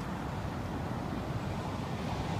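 Steady low rumble of road traffic from passing vehicles, with no horn sounding yet.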